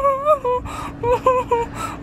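A person whimpering and moaning in pain from a finger just smashed in a gate. One long high moan is followed by a sharp breath, then a few short whimpers.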